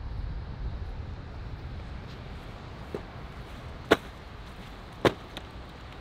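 Low, steady wind rumble on the microphone, with a few short, sharp clicks in the second half, the loudest about four and five seconds in.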